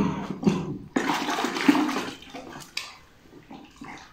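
A wooden carving dunked and swished in a metal bucket of dark liquid: liquid sloshing and splashing with a sudden start, loudest in the first two seconds, then dying away.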